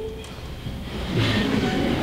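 Big-band jazz orchestra playing softly between sung lines. About a second in, the low instruments swell in with a dense chord.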